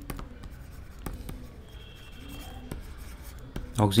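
Stylus writing on a tablet screen: faint scratching strokes with a few light taps.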